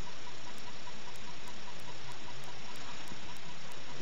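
Steady, even hiss with no distinct events: the recording's own background noise.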